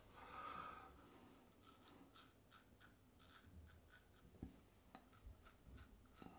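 Faint, short scraping strokes of a brass double-edge safety razor with a Gillette 7 O'Clock Black blade cutting stubble through lather, about three strokes a second, with one soft tap a little over four seconds in.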